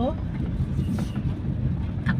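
Steady low rumble of a car's engine and tyres heard from inside the moving car, with a single short click about halfway through.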